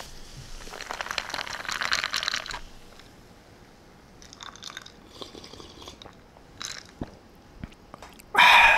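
A carbonated soft drink fizzing in a glass held close to the microphone: a dense crackle of popping bubbles for the first two and a half seconds, then thinning to scattered pops and short bursts.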